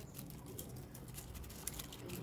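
Faint, irregular crinkling and scratching of a green strip being wound by hand around the stem of a handmade plastic flower.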